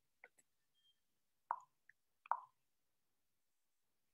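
Near silence broken by two short, soft plop-like clicks a little under a second apart, near the middle.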